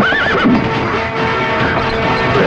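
A horse whinnies once at the start, a short wavering neigh, over background film music.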